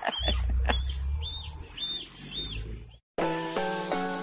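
A swan cygnet peeping: a run of high, arched cheeps, about two a second, over a low rumble. About three seconds in the sound cuts off and a melodic music outro starts.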